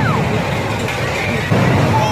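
Steel roller coaster cars rumbling along the track, growing louder about a second and a half in, with a short falling cry at the very start.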